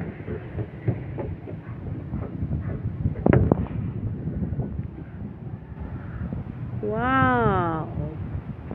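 Handheld walking on a suspension footbridge: a low rumbling haze with irregular low knocks, one sharp knock about three seconds in, and near the end a single drawn-out call that rises and then falls in pitch.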